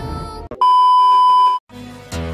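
A single steady electronic beep, a pure tone held for about a second, following the fading tail of a chime. Music starts with low held notes near the end.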